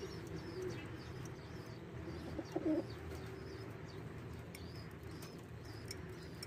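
Domestic pigeons cooing, with one louder low coo about two and a half seconds in. Faint, thin, high chirps repeat throughout.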